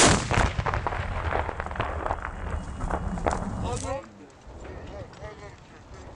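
A tripod-mounted recoilless gun fires: one sharp, loud blast, followed by about four seconds of rumbling echo with voices over it. The sound then drops to a quieter background with faint voices.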